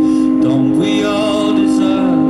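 Electric stage keyboard (Yamaha MOXF6) playing sustained chords, with a sung melody over it.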